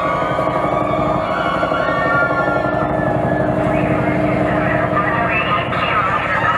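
A sound effect in a dance routine's soundtrack played over the PA: a fast, even low pulsing under several held tones that slowly glide in pitch, loud and steady.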